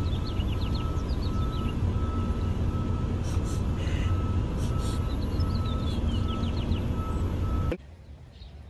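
Steady low rumble of a running vehicle with a faint high backup beep repeating at an even pace; the sound cuts off abruptly near the end.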